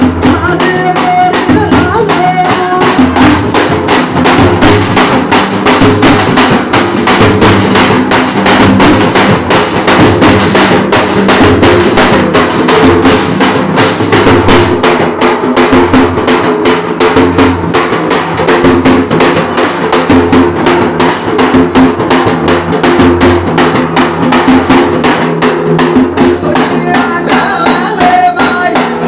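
Banjara dafda drum ensemble: several large double-headed drums struck with sticks, playing a fast, dense rhythm that runs on without a break.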